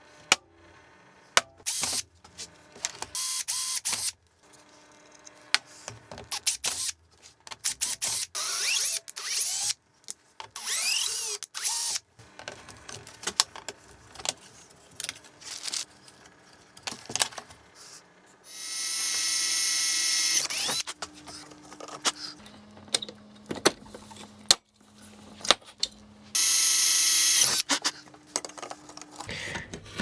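Cordless drill running in short bursts, the two longest about two seconds each, amid many clicks, knocks and rattles of metal parts and hand tools being handled.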